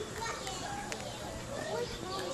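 Indistinct voices of children talking and playing, too faint and overlapping to make out words.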